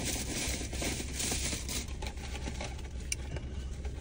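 Paper takeout bag and food containers rustling and crinkling as they are rummaged through, with one sharper click about three seconds in. A steady low hum of the car cabin runs underneath.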